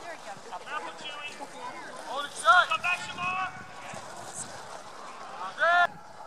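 Several voices calling and shouting from a distance across an open field, the loudest calls about two and a half seconds in and again near the end.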